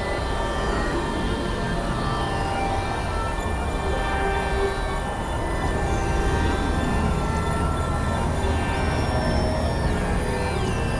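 Experimental synthesizer drone music: a dense, noisy texture over a steady low rumble, with many held tones that come and go and a few gliding pitches.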